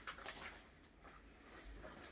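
Near silence, with a few faint soft rustles in the first half second from a cotton jumper being handled and lifted off a heat press.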